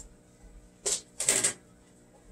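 Clattering clicks from a clothes dryer's controls being worked to switch it off, two of them in quick succession about a second in.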